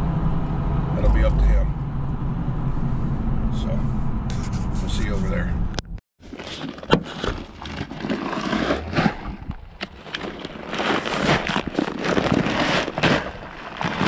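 Steady low road rumble inside a pickup cab, cutting off abruptly about six seconds in. It is followed by paper seed-corn bags rustling and scraping in uneven strokes as they are handled.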